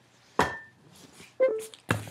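Handling noise from bags of merchandise being set aside and picked up: a sharp knock with a brief ring about half a second in, then a louder thump near the end.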